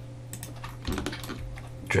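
Several light, quick clicks of a computer keyboard and mouse, in small clusters, over a steady low hum.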